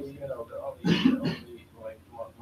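A person clears their throat once, briefly and loudly, about a second in, amid low speech in a meeting room.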